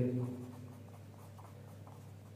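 A pen writing a word by hand on paper over a clipboard: faint, short scratching strokes.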